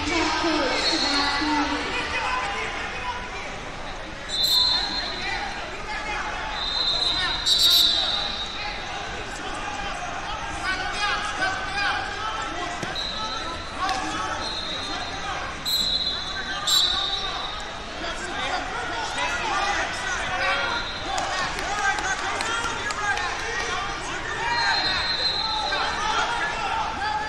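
Wrestling-hall din of voices and shouting coaches, with several short shrill whistle blasts from referees, the loudest about eight seconds in, and a few sharp thuds or slaps against the noise.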